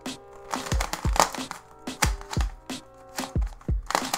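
Background music with a steady beat, over the fast plastic clicking of a large 3x3 speed cube being turned during a timed solve.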